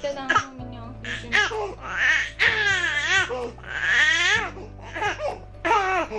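A baby laughing and squealing in a series of short high-pitched sounds, the longest a wavering one in the middle, mixed with a woman's playful voice. Soft background music plays underneath.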